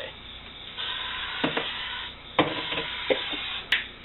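Aerosol can of PAM cooking spray hissing in two bursts of about a second and a half each, sprayed onto the inside of the freezer, with a few light knocks.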